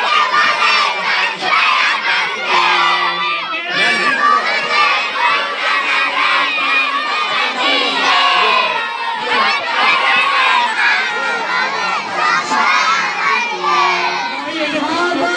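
A crowd of schoolchildren shouting and chattering all at once, a dense, loud din of many young voices with no break.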